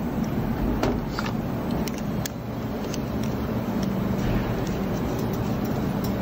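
Steady low mechanical hum in the background, with a few light clicks as the red air cap and tip holder are handled and fitted onto the front of an air-assisted airless spray gun.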